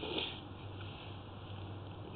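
A short breath drawn in just at the start, then only a faint steady low hum and hiss.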